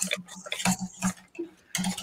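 A utensil clinking against a bowl as a mayonnaise dressing is whisked, a quick uneven run of light clicks, several a second.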